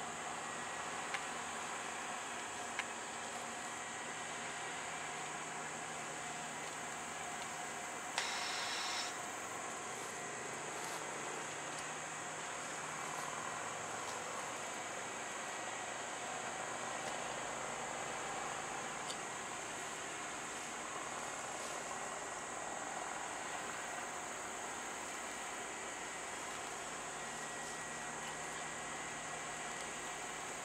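Distant freight-train diesel locomotives drifting slowly in toward a stop signal, heard as a faint low running sound under a steady hiss. A short burst of noise comes about eight seconds in, and the low rumble grows a little in the second half as the train draws nearer.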